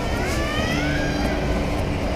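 Indoor shopping-mall ambience: a steady low rumble with faint pitched sounds over it.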